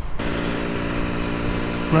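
Honda C90 Cub's small single-cylinder four-stroke engine running at a steady pitch while riding, over low wind rumble; the engine sound cuts in abruptly a moment in.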